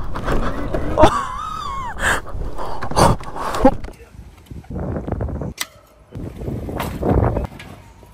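Kayo EA110 electric quad riding on asphalt: tyre rolling noise with a wavering electric motor whine. After about four seconds the sound changes to handling noise with a few sharp knocks as an electric dirt bike is moved about.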